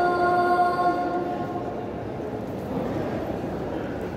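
A muezzin's voice over the mosque loudspeakers holding one long, steady note of the adhan, echoing in the hall and fading out about a second and a half in. After it comes the steady background noise of a crowd in the large hall.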